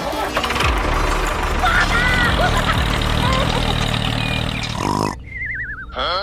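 A tractor engine running steadily, with a few short squeaky voice-like chirps over it. The engine cuts off about five seconds in, and a falling, warbling whistle follows.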